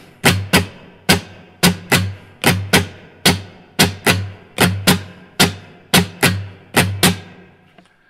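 Acoustic guitar strummed in the "Old Faithful" strumming pattern (down, down-up, up-down-up): sharp strums in an even rhythm, each ringing briefly before the next. The strumming stops about seven seconds in.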